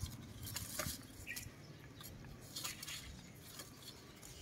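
Banana leaves and stalk rustling and crackling as a macaque clambers over the plant, in a few short bursts about half a second in and again near three seconds, over a low background rumble.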